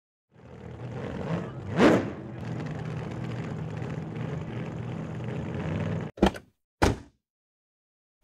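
Car engine running steadily, with a brief louder swell about two seconds in. It cuts off suddenly near six seconds and is followed by two car door slams about half a second apart.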